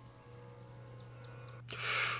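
A sharp intake of breath near the end, heard over a faint background with a few short high chirps.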